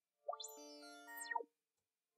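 Parsec 2 spectral synthesizer sounding one note for about a second, its partials stepping up and down in pitch as an LFO, slowed down, modulates the modifier's frequency.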